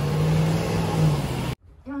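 City street traffic noise with a vehicle engine passing close, holding a steady low hum for about a second. It cuts off abruptly about one and a half seconds in, and a woman's voice begins near the end.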